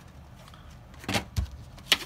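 Cardboard packaging of a trading-card starter kit being handled as its contents are pulled out: a brief scrape about a second in, a soft thud, then a sharp click near the end.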